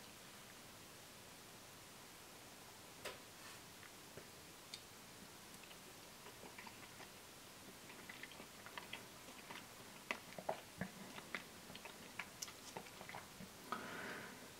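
Faint mouth sounds of a person eating a spoonful of ice cream with soft cookie pieces: scattered small wet clicks and smacks, more frequent in the second half.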